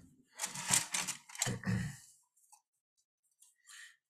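A man clearing his throat in a couple of rough bursts over the first two seconds, followed by near silence with a faint brief rustle near the end.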